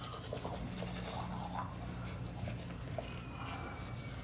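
Electric toothbrush running in the mouth during tooth brushing: a faint low hum with scratchy bristle-on-teeth sounds.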